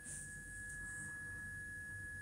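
Quiet room tone: a steady, thin, high-pitched electrical whine over a low hum.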